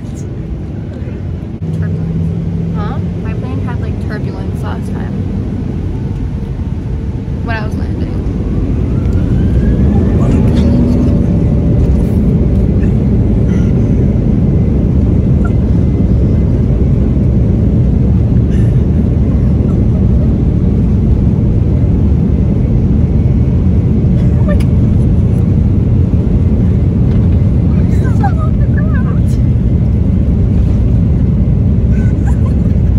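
Jet airliner engine noise heard inside the cabin, a steady rumble that grows louder about eight to ten seconds in and then stays loud, with a rising whine around ten seconds in. Faint voices and laughter sit under it.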